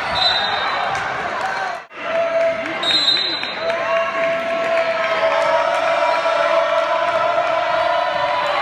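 Gym game noise at a basketball game: spectators and players shouting, with a basketball bouncing on the hardwood court. There is a brief drop-out about two seconds in, and a long held shout through the second half.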